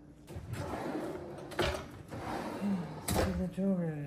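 Kitchen cabinets and drawers being handled: a scraping, rustling noise broken by two sharp knocks about a second and a half apart, with a brief voice near the end.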